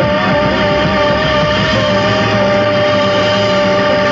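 Jazz-rock band of organ, saxophones, flute, congas, drums and bass playing an instrumental stretch. A single high note is held, wavering slightly, over a dense, steady chord.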